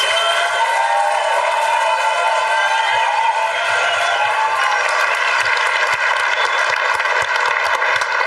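A large audience applauding steadily, with some voices cheering in the crowd.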